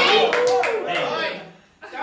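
Voices singing a music-hall song, holding the end of a line, with a few sharp claps. The singing dies away about a second and a half in.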